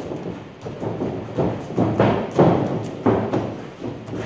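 Sparring sticks striking gloves, headgear and bodies in close exchanges: a quick run of about six dull thuds and knocks over a few seconds.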